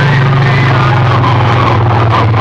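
Very loud, distorted, bass-heavy music from a DJ sound system's stacked horn loudspeakers, with a deep sustained bass note that dips slightly in pitch.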